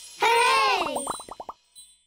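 A short cartoon sound effect, voice-like, gliding downward in pitch. It then breaks into a quick stutter that slows and fades out, lasting about a second and a half.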